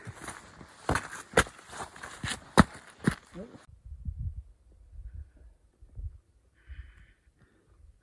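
Footsteps on a rocky, mossy mountain trail, heard as uneven knocks and scuffs with rustling over them, as someone walks while holding the camera. About three and a half seconds in the sound drops away to a faint low rumble with a few soft thumps.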